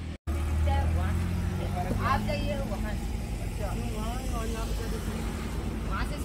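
A small hatchback car's engine running steadily close by, a low even hum, with children's voices faintly over it.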